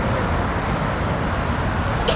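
Steady city street noise: road traffic running alongside, with wind gusting against the microphone as a low rumble.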